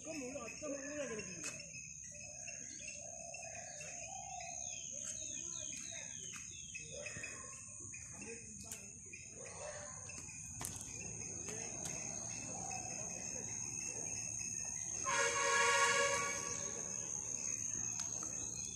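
Garden ambience of a steady high insect buzz with birds calling. About fifteen seconds in, a bus sounds a loud steady pitched note for about a second and a half.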